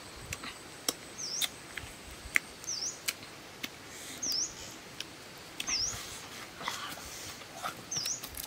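A bird repeating a short, high whistled note that dips and then rises in pitch, about every one and a half seconds, with scattered light clicks between the calls.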